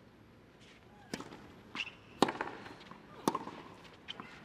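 Tennis rally: a ball hit back and forth with racquets, sharp hits about a second apart, with a fainter knock between the first two.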